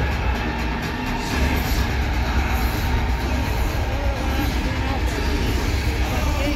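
Bass-heavy music played over a large arena's sound system, with the voices of a crowd underneath it.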